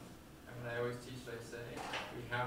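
Speech: one person talking in a lecture room, starting about half a second in after a short pause.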